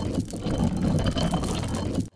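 Animated logo-reveal sound effect: a dense rushing noise over a heavy low rumble that cuts off sharply at the end.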